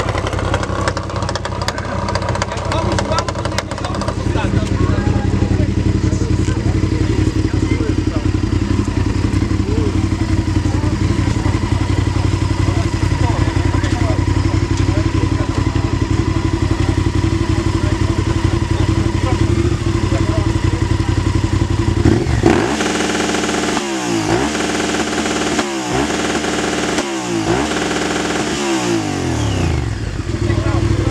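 Adventure-touring motorcycle engine running steadily at idle, then revved hard about five times in quick throttle blips near the end, each one dropping back to idle.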